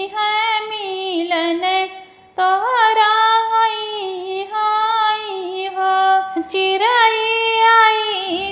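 A woman singing an Awadhi sohar folk song in a high voice, one line melismatic and drawn out, with no instruments heard. There is a short break for breath about two seconds in.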